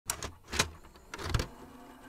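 Short whooshing sound effects of an animated logo intro: three or four quick swishes within the first second and a half, the last ones loudest, then only faint hiss.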